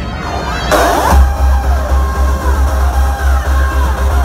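Hardstyle dance music played loud over a festival sound system, heard from within the crowd: a burst of noise with a sweep about a second in, then a heavy bass beat.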